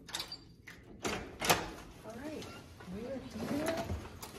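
Hotel room door's latch and handle clicking, then two loud clunks about a second and a second and a half in as the door is pushed open. A woman's voice follows, drawn-out and gliding in pitch.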